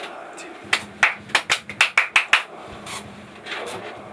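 Hand claps close to the microphone: a quick run of about nine sharp claps in under two seconds, then a few softer, scattered ones.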